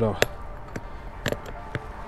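A handful of short, sharp knocks and clicks, spread unevenly over two seconds, from handling the open delivery top box on the back of a scooter.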